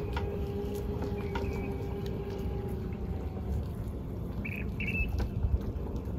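Outdoor lakeside ambience: a few short, high bird chirps over a low rumble, with a steady distant hum that slowly drops in pitch and fades out about halfway through.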